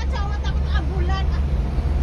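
Bus engine running with a steady low drone, heard inside the driver's cab.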